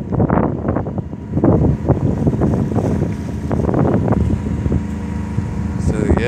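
Wind buffeting the microphone in uneven gusts on the deck of a small sailboat under way in about 16 knots of wind, with a steady low hum underneath.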